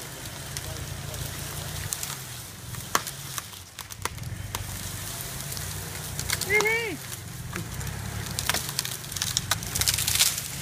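Footsteps crunching and crackling on dry leaf litter and twigs, irregular clicks scattered through, over a low steady hum. A single short pitched call rises and falls about six and a half seconds in.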